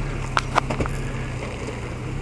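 A vehicle engine running at a steady low hum, with a few light clicks in the first second.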